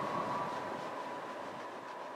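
Norfolk Southern work train rolling along the rails: a steady rumble and hiss of wheels on track, with a steady high tone running over it and faint ticks, slowly fading away.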